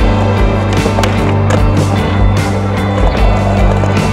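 Skateboard grinding along a ledge on its trucks, with wheels rolling and sharp clacks of the board, over a music track with a steady beat.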